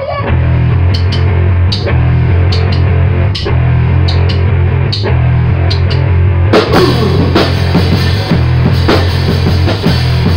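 Electric bass guitar and drum kit playing loud rock together, the bass holding heavy low notes under regular drum hits. About six and a half seconds in the cymbals come in and the drumming gets busier.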